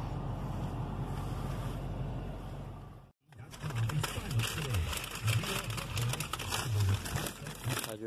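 Steady cabin noise of an idling Dodge Challenger, fading out about three seconds in. After a short break it gives way to rustling of a paper food bag, with low, indistinct voices underneath.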